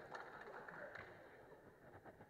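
Near silence: faint room tone with a few faint ticks.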